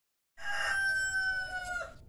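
A rooster crowing once: one long call that begins a moment in and sinks slightly in pitch toward its end.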